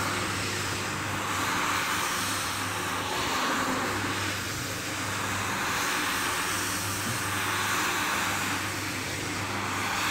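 Electric single-disc rotary floor scrubber running with a steady motor hum while its brush swishes through soapy foam on a rug. The scrubbing noise swells and eases every couple of seconds as the machine is swept back and forth across the rug.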